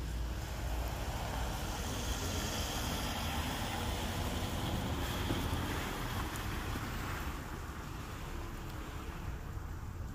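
Wind rumbling on a phone microphone outdoors, with a steady hiss that is fuller in the middle and eases off near the end.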